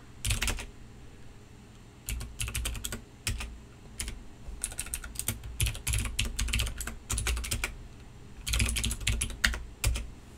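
Typing on a computer keyboard: bursts of rapid keystrokes separated by short pauses.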